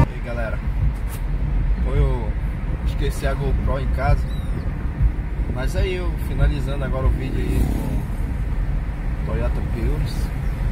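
Steady low road and tyre rumble inside a Toyota Prius's cabin while it cruises at about 65 km/h, with indistinct voices over it.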